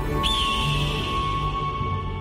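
Music of a radio station jingle: sustained low tones, with a high held tone that enters with a short upward bend about a quarter second in.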